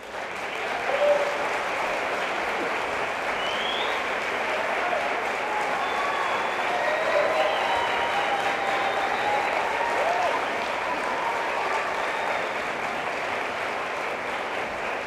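Audience applause breaking out suddenly and holding steady, with scattered cheering voices and a brief rising whistle above the clapping.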